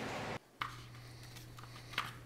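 Workshop background noise: a steady hiss that cuts off suddenly less than half a second in, then quieter room tone with a steady low hum.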